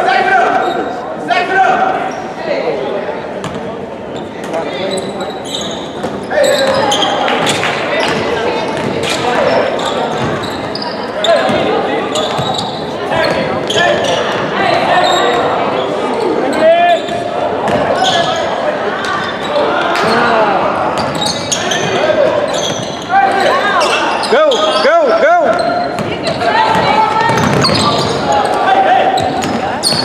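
Basketball bouncing on a hardwood gym floor during play, with voices of players and spectators calling out throughout, all echoing in a large gymnasium.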